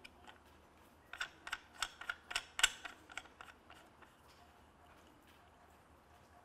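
Clamps of a data-cane mount clicking shut as a handheld data collector is fitted onto the cane: a quick series of about eight sharp clicks over roughly two seconds, starting about a second in.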